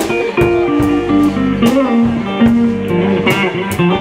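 Live blues-rock band playing: two electric guitars, one carrying a melodic line of held notes, over drums keeping a steady beat with cymbal hits.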